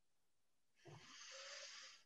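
Near silence, then about a second in a faint breath into the microphone, lasting about a second.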